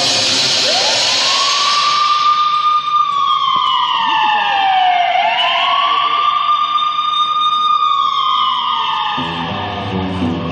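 A siren sound effect within figure-skating program music played over the arena's loudspeakers: two slow wails, each rising, holding and then falling in pitch, over a loud hiss that fades during the first two seconds. The band music comes back in about nine seconds in.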